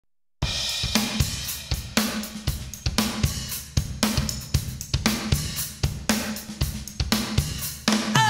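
A drum kit plays alone at the opening of a song: kick, snare, hi-hat and cymbal strikes in a steady beat with a heavy accent about once a second. It starts about half a second in after a moment of silence.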